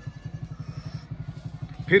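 Motorcycle engine idling: a fast, even low putter that runs on steadily.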